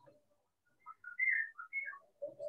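A person whistling a short run of quick notes that hop up and down in pitch, starting a little under a second in.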